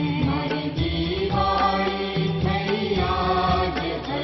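Hindu devotional music: a mantra chanted in a sung voice over instrumental accompaniment with a regular beat.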